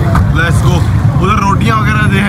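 A man talking over a steady low rumble from the street.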